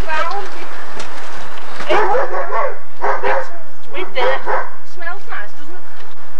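A dog barking several times in short barks, mixed with people's voices.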